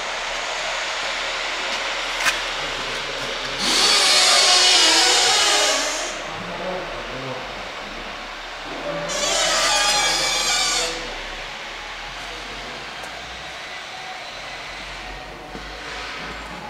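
A power tool on the building works runs in two bursts of about two seconds each, the first starting with a short rising whine as the motor spins up, over a steady background hiss.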